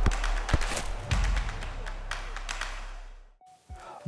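Sound effects of an animated logo intro: a loud hissing whoosh with several sharp hits over a deep bass rumble, dying away about three and a half seconds in.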